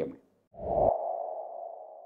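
Transition sound effect for a title card: a deep low hit about half a second in, with a ringing tone that slowly fades away.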